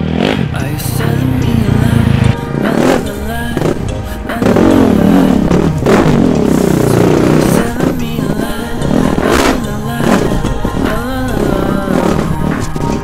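Rally raid motorcycle engine revving up and down over a rocky trail, with sharp knocks and clatter along the way, mixed under background music.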